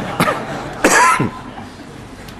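A man coughing into a close microphone: a short cough, then a louder one about a second in.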